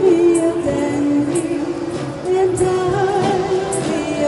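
Live band music with a woman singing long held notes over guitars and a drum kit, a cymbal struck about once a second.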